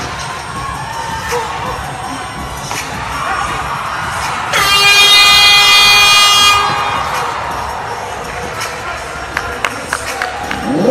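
Basketball scoreboard buzzer horn sounding once, a steady electronic blare of about two seconds starting about halfway in, over continuous crowd noise in the arena.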